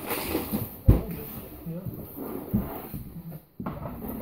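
Faint, indistinct voices over low background noise, with a sharp thump about a second in and a softer one later.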